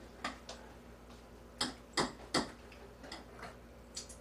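Kitchen knife slicing through a rolled piece of food and knocking on the cutting board: a few light taps, then three louder knocks in quick succession about two seconds in, then more light taps.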